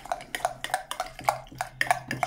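Metal spoon stirring stiff cooked oatmeal in a glass tumbler: repeated short clinks of the spoon against the glass, about three or four a second.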